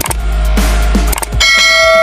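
Background music with a beat, then a couple of clicks and a notification-bell ding from a subscribe-button sound effect about one and a half seconds in, ringing on with bright overtones.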